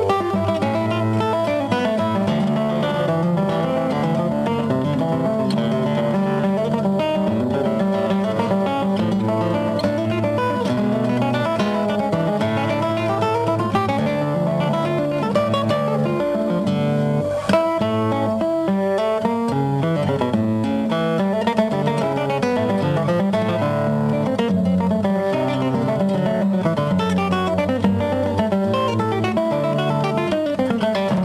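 Solo classical guitar played fingerstyle: a continuous stream of plucked nylon-string notes, with bass notes moving under the melody.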